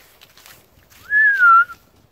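A person whistling to call dogs back: one clear note about two-thirds of a second long, starting about halfway in, rising quickly and then sliding gently down.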